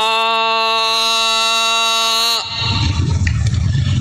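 A man's voice calling a long, drawn-out military drill command, scooping up into one steady held note for about two and a half seconds and then cutting off sharply.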